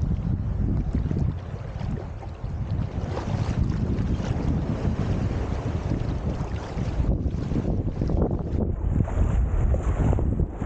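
Shallow seawater sloshing and lapping around a microphone held just above the surface, with heavy low rumble of wind and water buffeting the microphone. The sound dulls briefly about seven seconds in, and small waves wash in near the end.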